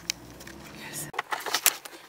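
Low steady hum of a car heard from inside the cabin, cutting off about a second in. A run of light clicks and rattles follows, like small metal objects such as keys being handled.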